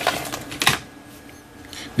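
Clicks and light rattling as a plastic storage case of voltage regulator ICs is picked up and handled, mostly in the first second, then much quieter.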